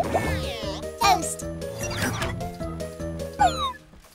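Children's cartoon background music with held notes, overlaid with sliding, voice-like cartoon sound effects that rise and fall; a quick falling whistle-like glide comes near the end.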